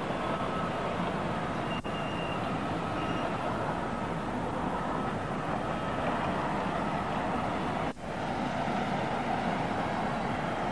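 Steady city ambience, a rumbling haze of distant traffic, played back from a VHS tape recorded at LP speed in mono. The sound briefly dips twice, about two seconds in and near eight seconds.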